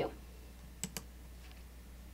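Two quick mouse clicks a little under a second in, faint, over a low steady room hum, as the Maximize View toggle in the SAS Studio browser interface is clicked off.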